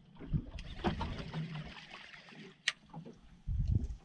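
Sea water lapping and slapping against the hull of a small boat, with a sharp click a little past halfway and a louder low thump near the end.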